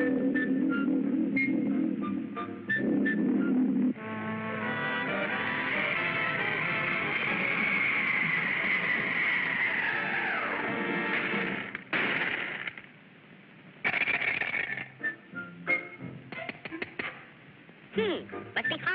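Cartoon soundtrack music with sound effects: a long high note that slides steeply down about ten seconds in, followed by short noisy bursts and quick hits.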